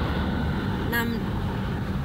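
Steady low road and engine rumble inside the cabin of a car being driven on a highway.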